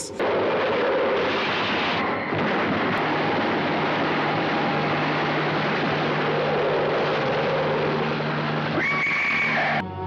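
Old film soundtrack of a giant scorpion's shrill, whinnying cries over a steady hissing crackle of electric current as the creature is electrocuted.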